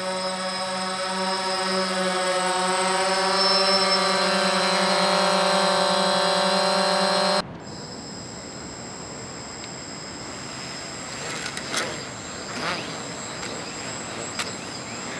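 DJI Phantom quadcopter hovering close by: a loud, steady propeller and motor hum that wavers slightly in pitch. About seven seconds in it cuts off to a much quieter, thin high whine from an F450 quadcopter spinning its rotors up, with a couple of short knocks near the end.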